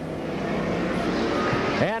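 Engines of a pack of speedway saloon cars racing on a dirt track: a steady engine drone that swells slightly as the field comes through the turn.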